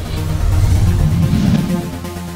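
Electronic outro music with layered synth tones over a heavy bass, swelling louder about half a second in and easing back near the end.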